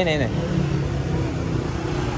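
City street ambience: a steady low rumble of road traffic with an engine running, after a brief spoken word at the start.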